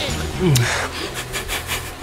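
A plastic energy-snack wrapper being torn open with the teeth and hands: a run of quick rips and crinkles in the second half.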